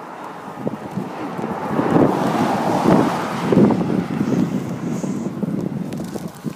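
Wind gusting over the microphone outdoors: a rough rush of noise that swells about a second in, is loudest in the middle and eases off near the end.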